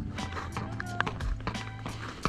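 Background music with held tones, over quick running footsteps on bare ice, a few steps a second.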